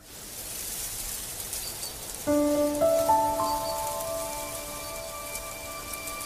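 A steady soft hiss of ambient noise, like rain. About two seconds in, gentle background music comes in with slow, sustained held notes.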